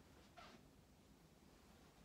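Near silence: room tone, with one faint brief rustle about half a second in.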